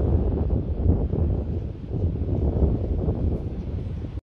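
Wind buffeting the microphone outdoors: an uneven, gusting low rumble.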